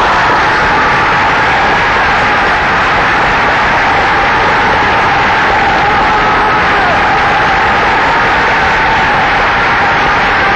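Loud, steady audience applause in a live opera house, with faint held notes from the orchestra beneath it.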